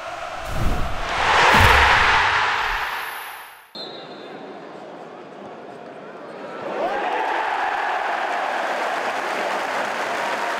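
A swelling whoosh with low booms, an intro sound effect, rises and then cuts off suddenly a little under four seconds in. It gives way to the murmur of a football stadium crowd, which swells into a loud, sustained roar about seven seconds in.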